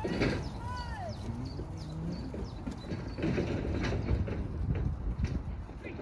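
A group of Holstein-Friesian cattle trotting over grass: a steady run of soft hoof thuds and trampling, busiest in the middle, with a few short high calls in the first second.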